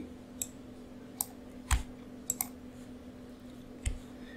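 A handful of short, sharp clicks at irregular spacing from a computer mouse and keyboard being used to edit, two of them with a low thud, over a faint steady hum.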